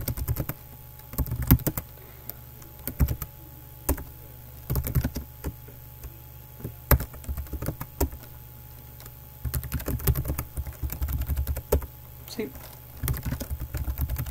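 Typing on a computer keyboard: quick runs of keystrokes in short bursts with pauses between, over a steady low hum.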